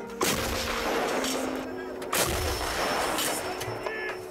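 Artillery guns firing, about three heavy shots a second or two apart, under soft background music.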